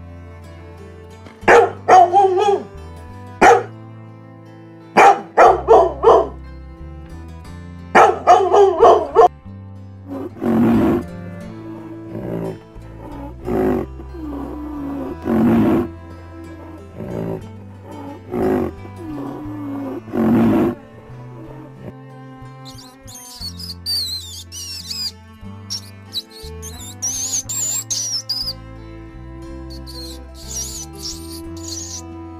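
A string of animal calls over background music. It opens with three quick clusters of short, loud, pitched calls in the first ten seconds, then a run of deeper, rougher calls, then high squeaks and chirps near the end that fit a pet rat.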